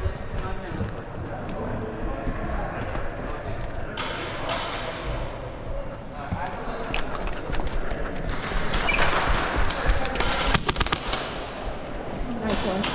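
Airsoft guns firing in rapid bursts, with sharp clicks of shots and BB hits that grow densest and loudest in the second half. Indistinct player voices run underneath.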